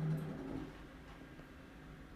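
Faint low hum and rumble inside an elevator cab: a steady hum fades out about half a second in, leaving a quiet low rumble.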